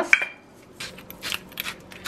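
Fine salt shaken from a metal shaker onto a raw steak: a few short, hissy shakes, the first about a second in and the rest close together near the end.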